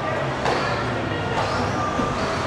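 Radio-controlled electric stadium trucks running on an indoor dirt track, a steady mix of motor whine and tyre noise, with voices talking in the background.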